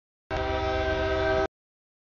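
CSX freight locomotive's air horn sounding one blast of about a second, a chord of several steady tones over the train's low rumble, the warning for a grade crossing.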